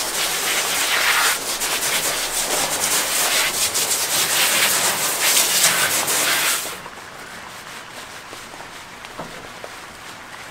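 Water spraying from a hand-held hose nozzle onto a dog's coat in a stainless steel wash tub, a steady hiss that cuts off about seven seconds in.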